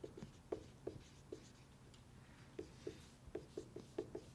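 Dry-erase marker squeaking faintly on a whiteboard in quick short strokes as a word is written, with a pause of about a second midway.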